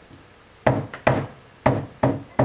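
Hammer striking wood: three sharp blows, roughly half a second apart.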